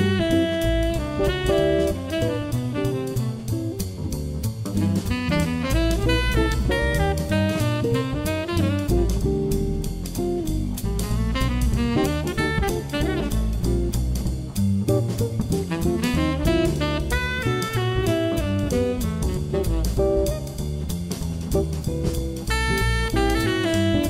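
Instrumental background music in a jazz style, with a steady drum beat under melodic lines.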